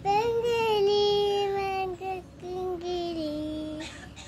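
A toddler girl singing in long held notes: two sustained phrases, the second starting about two seconds in.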